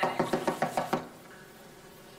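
A fist knocking rapidly on a glass door: a quick run of about eight knocks in the first second, then stopping.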